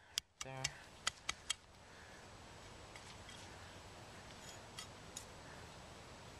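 A few sharp, light clicks of small hard objects being handled within the first second and a half, then faint steady background hiss with a few faint ticks.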